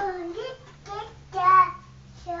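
A toddler singing in a high, wordless voice: three short sung phrases, the loudest about a second and a half in.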